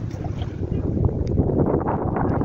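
Wind buffeting the microphone over the low rumble of a bicycle rolling across brick paving, building up about a second in and then steady.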